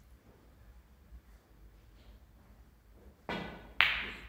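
A snooker shot: after a near-silent pause, the cue strikes the cue ball near the end, then the cue ball hits the red with a sharp click.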